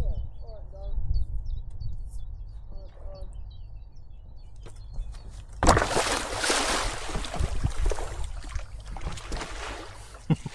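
A rider landing on an inflatable stand-up paddleboard on the water from a running jump, with a sudden loud splash a little past halfway, followed by about three seconds of rushing, sloshing water that fades as the board glides off. A low wind rumble on the microphone runs underneath.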